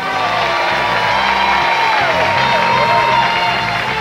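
Game-show studio audience cheering over the show's prize-reveal music, at a steady level throughout.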